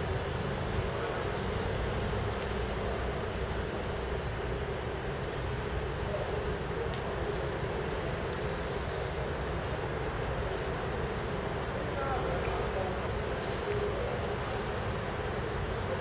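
Steady city street ambience: a low rumble of traffic with indistinct distant voices and a few faint high chirps.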